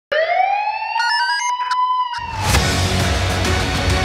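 Opening theme of a TV crime programme: a siren-like wail rising in pitch, with a few quick electronic blips over it. About two seconds in, loud music with deep bass comes in.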